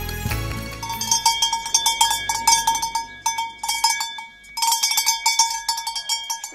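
A small metal goat bell shaken by hand, ringing in quick, irregular clanks, with a brief pause about two-thirds of the way through.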